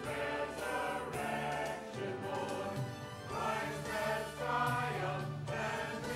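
Mixed church choir of men and women singing together, holding long notes in several parts.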